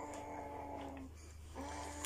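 A person humming a steady closed-mouth "mm" on one note, held about a second, then a second hum near the end.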